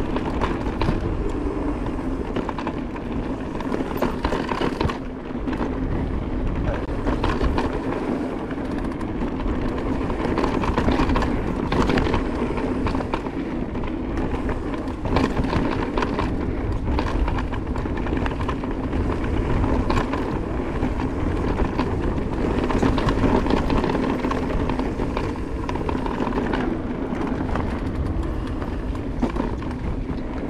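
Electric full-suspension mountain bike ridden down a dirt singletrack: steady wind and tyre rumble, with frequent short rattles and knocks as the bike goes over bumps.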